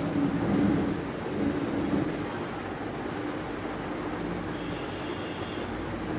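Steady background hum and hiss, like a room fan or air cooler, with a few faint handling sounds in the first two seconds.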